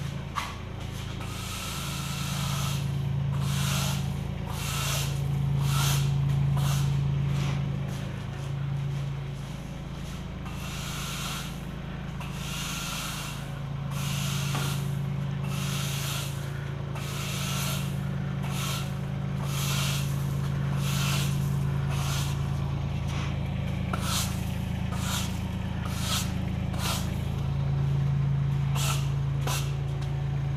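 Push broom sweeping a concrete workshop floor: repeated short, scratchy brush strokes, in clusters with pauses between. A steady low hum runs under the sweeping.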